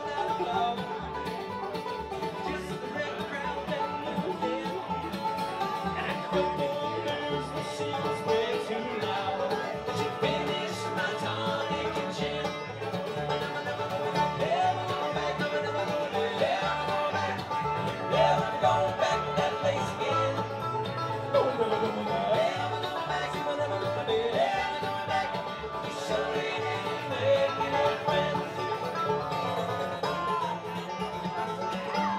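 Bluegrass band playing live: a picked banjo leading over strummed acoustic guitar and upright bass.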